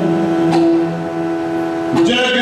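Yakshagana music held on one long, steady note over the drone, with a single sharp stroke about half a second in; the melodic singing resumes right after.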